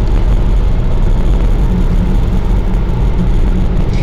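Steady road noise inside a moving car: a low engine and tyre rumble with tyre hiss from the wet road surface.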